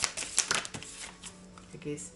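A deck of tarot cards being shuffled by hand: a quick run of card flicks and riffles that dies away about a second in.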